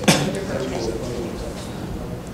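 Indistinct murmur of several people talking at once in a meeting room, with a sudden loud, sharp sound right at the start.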